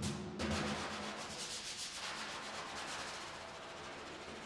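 Large Nubian tar frame drum: one last stroke right at the start, then the head is rubbed by hand, making a steady swishing hiss that slowly fades.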